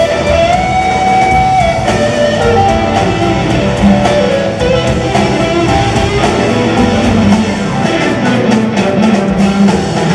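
Live rock band playing, led by an electric guitar on a Fender Stratocaster-style guitar, over bass and drums. Just after the start the guitar bends a note up and holds it for about a second before running on into a busier line.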